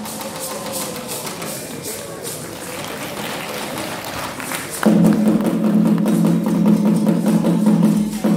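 Traditional Ewe drumming ensemble with percussion: lighter playing at first, then the full drums come in loudly and suddenly about five seconds in as the dance starts again.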